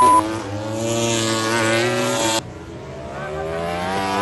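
MotoGP racing motorcycle engines at high revs, each accelerating with a steadily rising pitch. The sound cuts abruptly about two and a half seconds in to a second bike accelerating. A short beep-like tone sounds at the very start.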